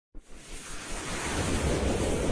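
A rushing whoosh sound effect for an animated logo intro. It starts abruptly and swells steadily louder.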